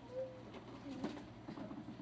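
Quiet room tone in a short pause, with one brief, faint hum just after the start and a few soft ticks about a second in.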